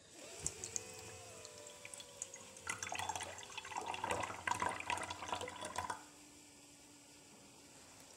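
Water pushed out of a plastic bottle through a straw, trickling and splashing into a glass from about three seconds in to about six seconds. A faint tone slides slowly down in pitch before the splashing.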